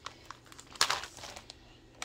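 Plastic wax-melt packaging crinkling as it is handled, in a few short crinkles, the loudest just under a second in.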